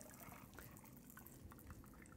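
Faint trickle of a shaken cocktail being strained from a metal shaker into a highball glass of ice, with a few light drips.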